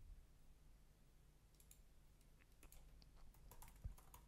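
Faint typing on a computer keyboard: a handful of light key clicks, mostly in the second half, against near silence.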